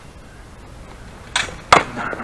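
Steel sparring blades striking twice in quick succession near the end, two sharp metallic clashes, the second the louder.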